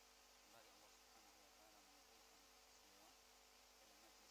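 Near silence: faint steady hiss and low hum of the recording.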